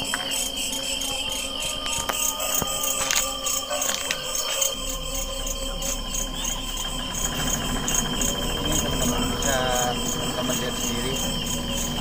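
Crickets chirping in a steady, evenly pulsed chorus, with a continuous high insect trill underneath.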